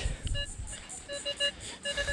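Nokta Makro Legend metal detector sounding short, pitched target beeps as the coil passes over a target reading 48–49, a tone that sounds kind of like a quarter. One beep comes first, then three quick beeps in the middle and another near the end.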